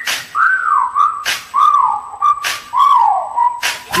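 A whistled melody of short notes, each swooping downward, with the last one held level, in the break of a hip-hop track: the bass and rapping drop out, leaving only the whistle over a few sparse drum hits.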